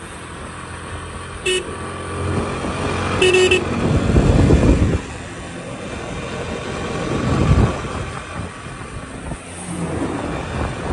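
Road traffic: a vehicle engine running, with two short horn toots about a second and a half and three seconds in, and louder rushing swells from passing or accelerating traffic around four and seven seconds in.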